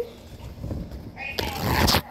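A sheet of paper towel being pulled and torn off the roll: a loud rustling tear in the second half.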